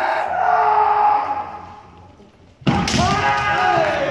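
Kendo fencers' kiai shouts: a long held yell at the start that fades out over about a second and a half. Near the end comes a sharp impact, a stamping lunge and shinai strike, followed at once by more loud shouting.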